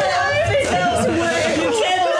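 Overlapping chatter from a group of people talking over one another.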